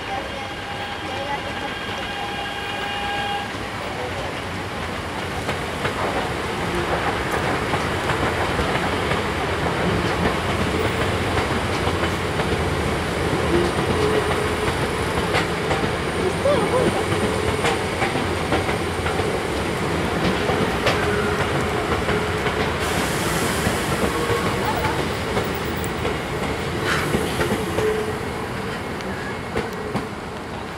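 E926 East-i Shinkansen inspection train sounding its horn, a steady tone held for about three seconds and then cut off. The train then rolls slowly past over depot track, its running noise swelling and fading, with occasional sharp clicks of wheels crossing rail joints.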